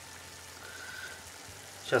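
Turkey fillet frying in rendered bacon fat in a pan, a low steady sizzle.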